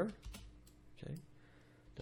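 A few quick clicks from a computer mouse and keyboard near the start, with a short bit of voice about a second in.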